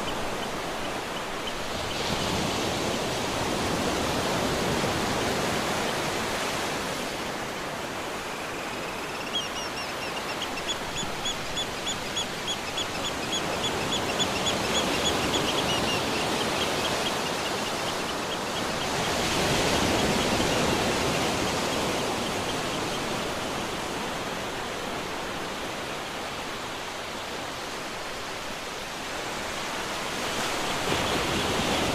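Small sea waves breaking and washing up a sandy shore, a steady rushing that swells and eases every few seconds. Midway, a high, rapid chirping trill runs for several seconds over it.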